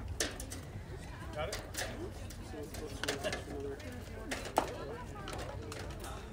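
Indistinct chatter of people talking near the microphone, with a few sharp pops or clicks, the loudest about four and a half seconds in.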